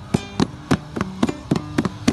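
Acoustic guitar strummed in a steady rhythm, with sharp strokes about three times a second over ringing chords.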